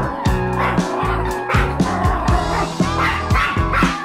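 A small Pomeranian–Spitz mix dog barking several times in agitation at a waved electric mosquito swatter, which it seems to be afraid of. Background music with a steady beat plays underneath.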